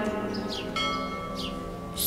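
A bell-like chime struck about three-quarters of a second in, ringing on with a few clear steady tones over a soft music bed.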